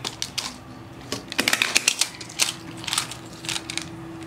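Plastic magnetic building tiles clicking and clacking against each other and the hard floor as a toddler handles them, in irregular clusters of sharp clicks.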